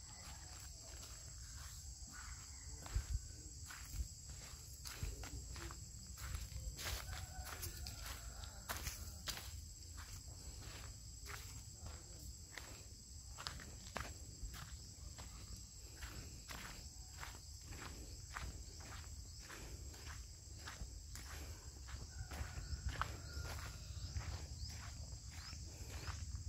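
Footsteps walking steadily over leaf-strewn dirt ground, about two steps a second, with a steady high insect drone behind.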